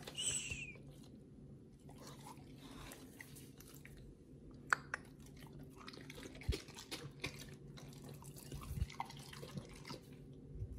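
Hands handling raw chicken pieces and fruit on a stainless steel plate: wet squishing with scattered sharp clicks.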